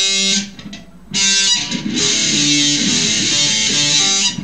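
Jackson electric guitar playing a slow, note-by-note demonstration of a lead guitar phrase. One note rings and fades about half a second in, then fresh notes start about a second in and ring on.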